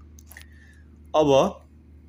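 A single short spoken word about a second in, preceded by small mouth clicks and lip noises close to the microphone, over a steady low hum.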